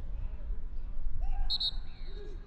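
Referee's whistle, two short shrill blasts about one and a half seconds in, stopping play as the assistant referee's flag goes up. Under it is a steady stadium background, with a brief shout just before the whistle.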